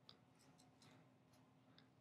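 Near silence, with a few very faint small ticks from a toothpick and rubber-gloved fingers working epoxy putty into a screw hole.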